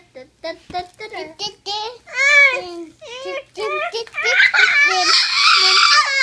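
A toddler girl's high-pitched babbling and short calls, rising into loud, excited squealing over the last couple of seconds.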